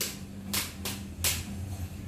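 Wall rocker light switches being pressed, about four sharp clicks within a second and a half.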